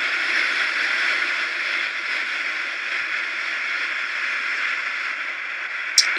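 Steady, pitchless rushing noise of wind and road from a moving motorbike camera's microphone, even in level throughout.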